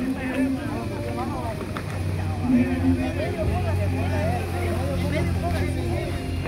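Several people chatting indistinctly over a steady low hum.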